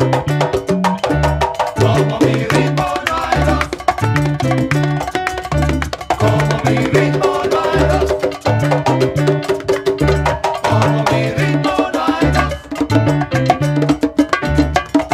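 A salsa band playing an instrumental descarga: a repeating bass line under Latin percussion with a steady beat.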